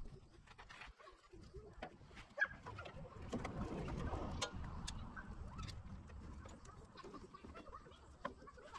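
Faint clucking of chickens, with a sharp click about two and a half seconds in and light handling noises as a cable is worked through a tractor's engine bay.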